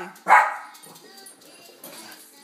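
A dog giving one loud, short bark just after the start, then going quiet. The dog is mad at someone touching Lucy.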